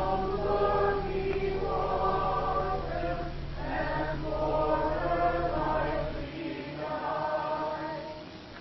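A congregation singing a hymn together in phrases, with short pauses between lines.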